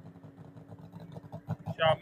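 Faint low engine rumble, pulsing unevenly, over a steady low hum, heard thinly through a phone livestream's audio.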